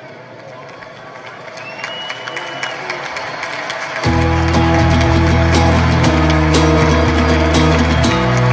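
Song intro: ambient noise with indistinct voices swells for about four seconds, then the full band comes in suddenly and loudly with bass and guitar.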